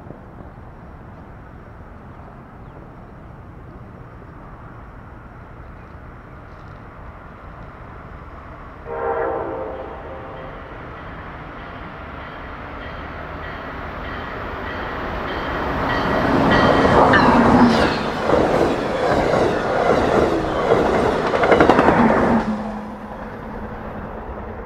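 Amtrak Siemens ACS-64 electric locomotive No. 662 leading a passenger train: a low distant rumble, one short horn blast about nine seconds in, then the train growing louder as it passes at speed, its wheels clattering over the rail joints. The sound cuts off suddenly near the end.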